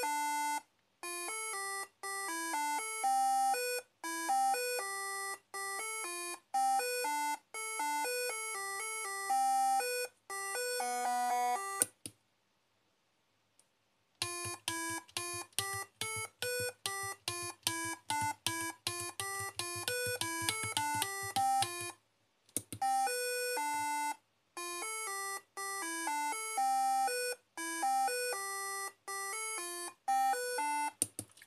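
Electronic tone melody from an Arduino Pro Mini driving a small loudspeaker, one beep-like note at a time in a steady rhythm. It pauses for about two seconds near the middle, then picks up with a faster run of notes, then returns to the slower tune.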